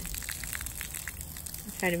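Water from a garden hose, its opening partly covered by a thumb, spattering steadily onto wet concrete as a patter of small splashes.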